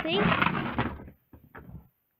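A child's voice trailing off, then about a second of rolling, scraping noise as a small wooden pull-along toy is pushed across a laminate floor. The noise dies away about a second in.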